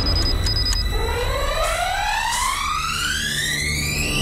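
A rising synth sweep in a cinematic electronic music track: two short high beeps, then from about a second in a pitched tone with overtones glides steadily upward for about three seconds over a low drone, building into the return of the full music.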